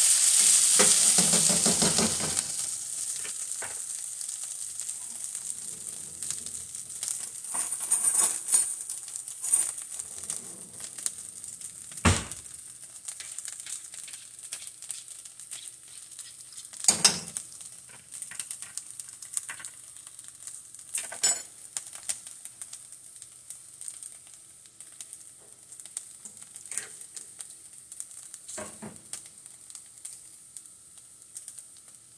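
Shredded hash browns and bacon sizzling in frying pans, with a spatula stirring and scraping the potatoes in the first couple of seconds. The sizzle slowly dies down, broken by a few sharp clinks of utensils against the pans.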